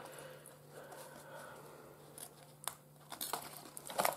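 Faint rustling of paper as the pages of a handmade paper journal are handled and turned, with a few light ticks and taps in the second half.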